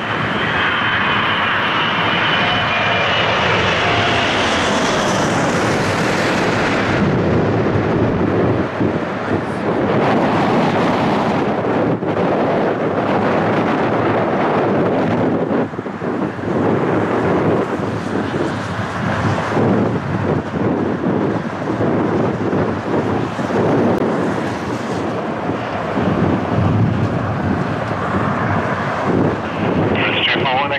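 Airbus A380's four jet engines: a high whine over a roar as the jet comes in on approach. About seven seconds in the whine cuts off, and a rumbling jet roar goes on, rising and falling, as the jet is on the runway.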